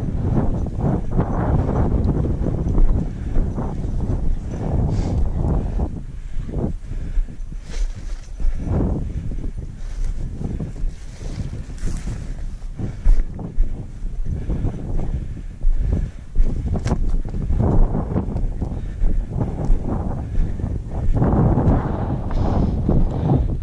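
Wind buffeting the microphone in a loud, uneven low rumble, with scattered sharp clicks of stones underfoot as someone walks over loose limestone rock.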